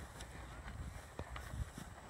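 Faint wind rumble on the microphone, with a few soft, scattered knocks.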